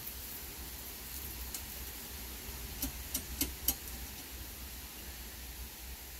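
Quiet steady low hum and hiss, with a handful of light clicks near the middle, as small metal parts are handled.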